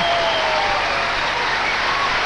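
Studio audience applauding steadily, with a held vocal call that trails off in the first second.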